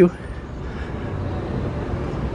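Steady city street traffic noise: an even hum with no distinct events, growing slightly louder.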